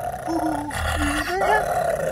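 A toddler making playful growling animal noises, two drawn-out raspy growls.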